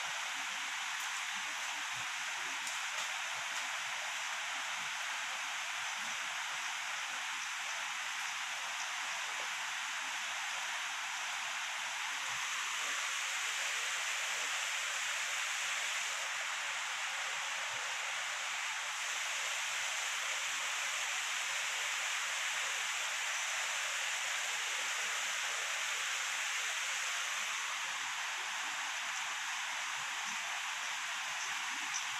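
A steady, even hiss of outdoor background noise, a little louder through the middle, with no distinct calls or knocks standing out.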